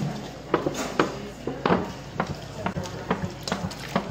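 Whole milk glugging out of an upturned plastic gallon jug into a galvanized trash can full of crushed Oreos and ice cream, in irregular gulps about two or three a second.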